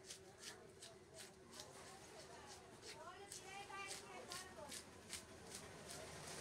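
A blade scraping scales off a large fish in short, rasping strokes, about two or three a second. Voices talk faintly behind it.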